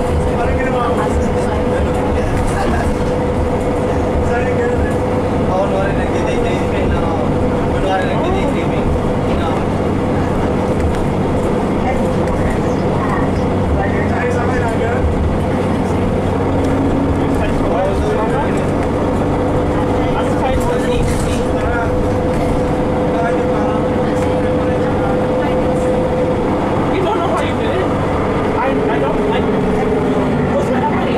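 Interior of a 2015 Nova Bus LFS city bus under way: steady drone of the drivetrain and road noise, with a constant whine running through it.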